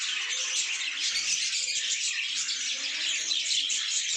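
A flock of caged budgerigars chattering continuously, a dense mass of small chirps and warbles.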